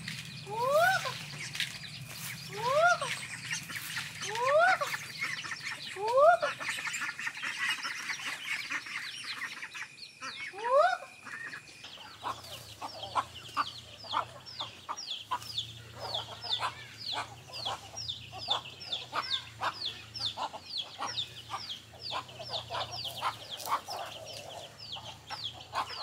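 Chickens with chicks: from about halfway, the chicks peep rapidly and high-pitched, about three a second. In the first half a louder short rising call repeats about every two seconds over a steady high hum.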